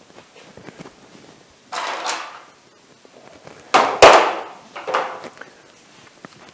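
Handling noises as a ratchet strap with a metal hook is picked up: a rustle about two seconds in, then a sharp knock and clatter around four seconds in, and a smaller knock a second later.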